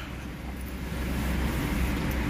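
Low, steady rumble of a car's engine and tyres heard from inside the cabin as the car moves off, growing a little louder as it gathers speed.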